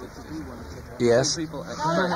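Speech only: voices talking in an interview recording. A louder voice breaks in about a second in, holding one pitch briefly.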